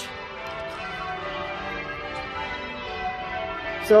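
Church bells of St Martin-in-the-Fields ringing, many overlapping bell tones sounding steadily in the manner of change ringing before the Sunday service.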